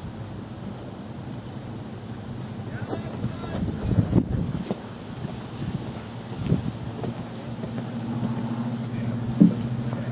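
Outdoor ambience with wind on the microphone over a faint steady low hum, and a few dull thumps near the middle.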